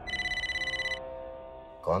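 A mobile phone ringing: one rapid electronic trill lasting about a second, over a fading musical drone.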